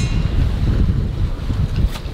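Wind buffeting the microphone on an open boat at sea: a heavy, gusting low rumble.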